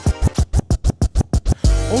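A DJ scratching a vinyl record on a turntable: a fast run of short, chopped cuts, about ten a second. Near the end a beat with deep bass drops back in.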